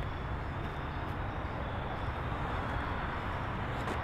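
Steady outdoor background noise: a low, even hum of distant road traffic, with no distinct events.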